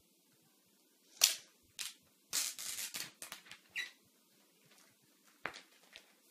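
Plastic packaging crinkling and rustling in a quick run of short crackly bursts as a new MacBook Air is unwrapped and lifted out of its box, followed by a single sharp click near the end.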